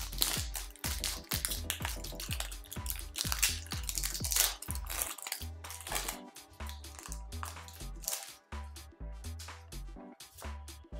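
Background music with a steady bass beat, over the crinkle of a foil booster pack being torn open and handled.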